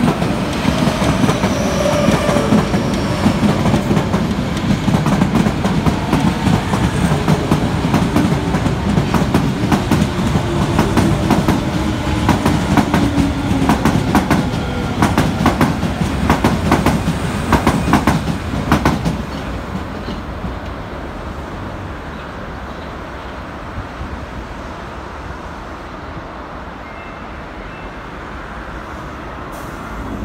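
An Osaka Metro 21 series subway train runs past slowly as it comes into the station. Its wheels rumble and click over the rail joints, and its motor whine falls in pitch as it slows. The train noise stops about two-thirds of the way through, leaving a steady background hum.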